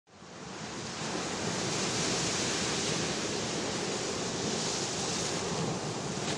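Steady rushing of ocean surf, fading in over the first second and holding even, with no separate breaking waves.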